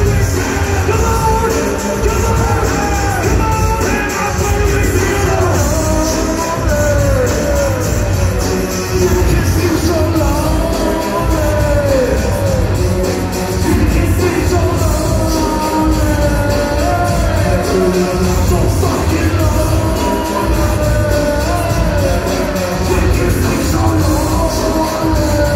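Live hip-hop concert music played loud through a PA, heard from the audience: a heavy, continuous bass beat with a gliding, wavering sung melody over it.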